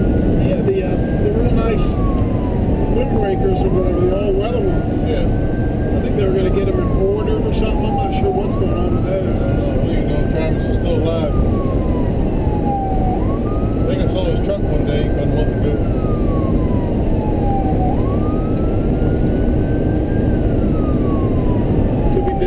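Ambulance's electronic siren sounding a wail, rising and falling about every five seconds, heard from inside the cab over a steady, louder rumble of diesel engine and road noise.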